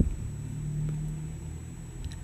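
A low, steady background hum or rumble, with one faint click about a second in.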